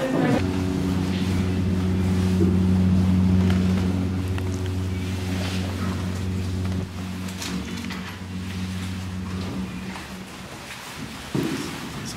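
Steady low mechanical hum of an aerial cable car's machinery, a few held tones that stay level and then drop away about nine and a half seconds in.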